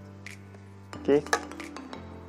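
A few light clicks and clinks as the hard parts of a laptop stand and its screw fitting are handled.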